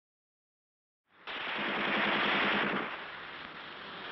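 Rapid machine-gun fire on an old, dull-sounding archival recording. It starts suddenly about a second in and is loudest for under two seconds, then goes on as a lower rattle.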